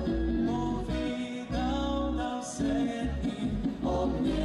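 Slovenian folk ensemble playing a song live: guitar and bass with held sung notes.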